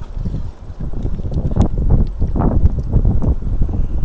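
Wind rumbling on the microphone, with a run of irregular thumps and knocks on wooden pier deck boards, several a second.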